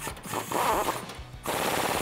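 Impact wrench with a 19 mm socket hammering rapidly as it runs a bolt down tight, the rattle getting louder about halfway through.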